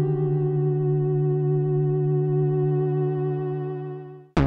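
Korg Minilogue analog synthesizer playing a held chord on its lo-fi 'Sighola' patch, a dirty, slightly wavering tone. It fades away near the end.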